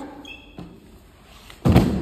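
A heavy thud about one and a half seconds in, as a person is thrown down onto a floor mat, with a short ring of the room after it.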